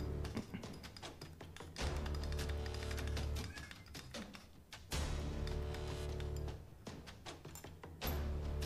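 Garlic cloves being pounded in a stone mortar with the handle end of a metal meat mallet: a run of irregular dull knocks, over background music with long held bass notes.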